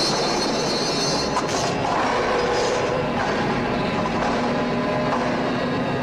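Horror-film soundtrack: a steady, dense rushing roar of sound effects with faint eerie held tones under it, no voices.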